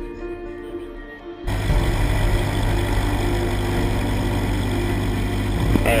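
Background music; about a second and a half in, the steady sound of a light aircraft's piston engine running cuts in suddenly, heard from inside the cockpit under the music.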